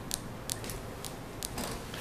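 A few brief, sharp clicks over quiet room noise.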